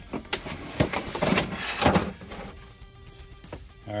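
Cardboard box and clear plastic packaging tray being handled and slid apart, with several knocks and scrapes in the first two seconds, over soft background music.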